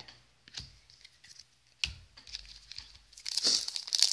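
A few faint clicks and a sharper tap about two seconds in, then a foil O-Pee-Chee Platinum hockey card pack crinkling and tearing open in the last second or so.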